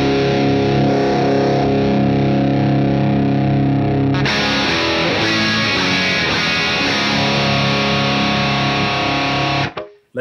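Electric guitar played through a Matthews Effects Architect V3 Klon-style overdrive into a Tone King Sky King clean combo, giving a lightly driven tone. A held chord rings for about four seconds, then a new passage of strummed chords and notes plays, and the strings are cut off sharply just before the end.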